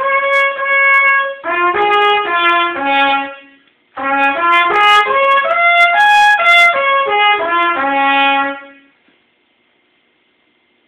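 Trumpet playing the few notes available without valves, the open notes of the natural harmonic series. It holds one long note, then plays two runs of shorter notes stepping up and down, with a brief break between them, and stops near the end.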